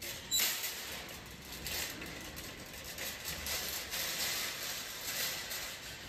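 Wire shopping cart pulled from a nested row and pushed along, starting with a clank and then rattling continuously as it rolls.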